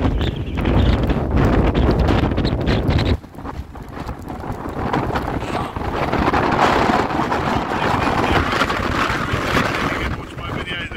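Strong wind buffeting the microphone with a heavy low rumble that cuts off suddenly about three seconds in, leaving gusty wind and small waves washing onto a sandy shore.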